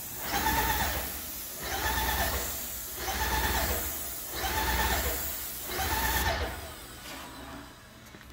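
Graco SaniSpray HP 65 disinfectant sprayer in use: a steady hiss of spray from the gun tip, while the on-demand pump cycles on and off in five whining pulses a little over a second apart to hold pressure, which is its normal operation. The hiss cuts off about six seconds in when the trigger is released.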